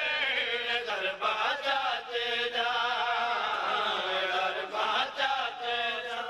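Men's voices chanting together in a drawn-out, wavering melodic line: a devotional qaseeda sung in chorus.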